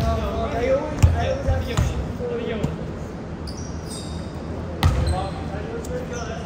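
A volleyball being played in a gym: a few sharp ball smacks, the loudest about a second in and another about five seconds in, over players' voices.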